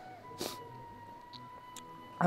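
Quiet pause in the room with a faint steady high tone, and one short noise about half a second in.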